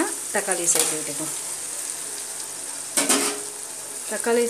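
Onions and green chillies sizzling in oil in an aluminium pot as chopped tomatoes are tipped in and stirred with a metal spoon. A louder, short rush of sizzling and scraping comes about three seconds in.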